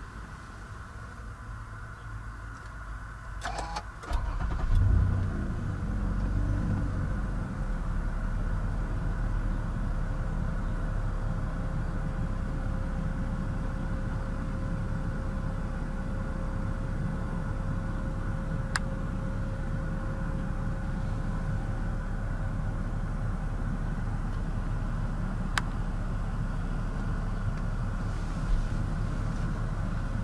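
2012 Toyota Alphard's engine cranked and catching about four seconds in, revs flaring briefly, then settling into a steady idle.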